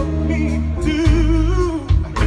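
Live band and singer playing through outdoor PA speakers: a long sung note with vibrato about a second in, over the band's bass and drums.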